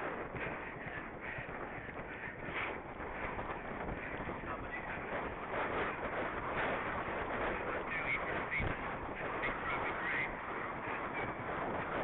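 A horse galloping on turf, heard from a helmet camera: wind noise on the microphone over the horse's hoofbeats and breathing.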